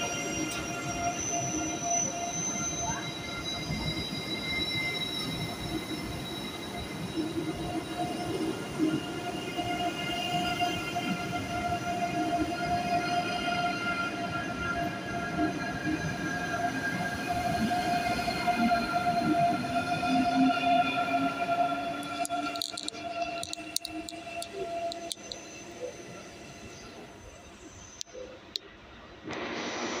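ICE high-speed electric train pulling slowly out past the platform: several steady whining tones from its electric drive over the rumble of its wheels, fading away from a little past two-thirds of the way through.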